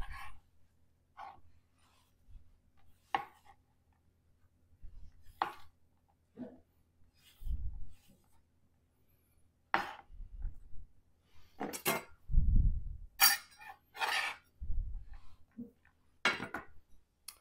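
Bench scraper scraping across a cutting board and knocking against a small glass bowl as minced onion is pushed in: scattered scrapes, clicks and dull knocks, more frequent in the second half.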